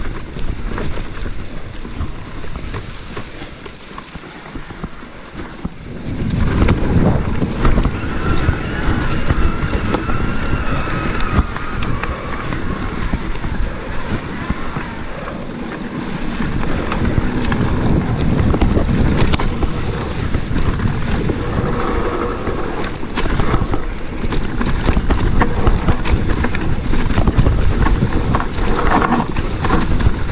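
Wind buffeting a helmet camera's microphone, with the rattle and tyre noise of a Cube Stereo Hybrid electric mountain bike riding over a rough forest dirt trail. It is quieter at first, then louder and rougher from about six seconds in.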